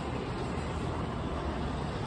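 Steady low rumble and hum of a stopped electric express train and its running equipment at a station platform, with no sudden sounds.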